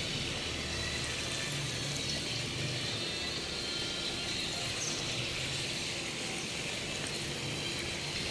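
Steady rushing of swimming-pool water, an even hiss with no distinct splashes.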